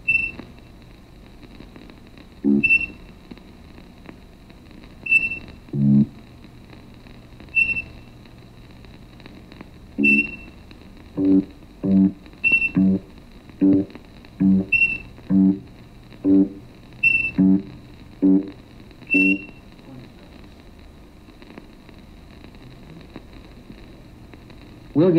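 Electronic blip tones from a physics animation's soundtrack, played over speakers in a room. A high ping sounds at a steady pace of about one every two and a half seconds. Low plucked-sounding tones come slowly at first and then follow much faster from about ten seconds in, marking light flashes that are received further apart while the ship moves away and closer together while it approaches.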